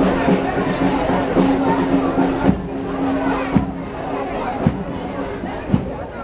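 Marching band music in a street parade: two low notes held together through the first half, then a bass drum beating about once a second, over crowd chatter.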